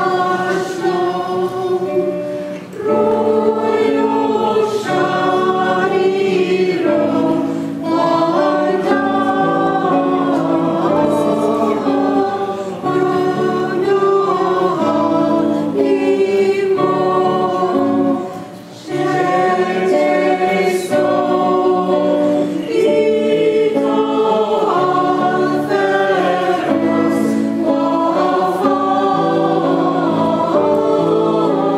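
Church choir singing in long held phrases, with brief breaks about three seconds in and again near nineteen seconds.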